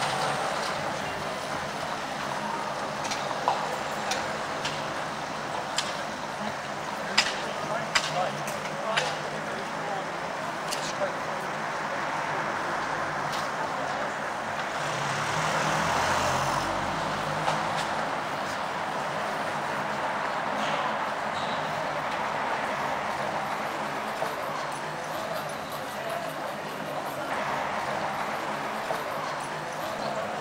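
Busy city street ambience: traffic noise with a vehicle passing close about halfway through, scattered sharp clicks of footsteps on the pavement in the first third, and passers-by talking.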